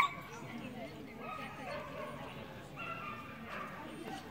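A dog whining and yipping: a loud yip right at the start, then several drawn-out high whines.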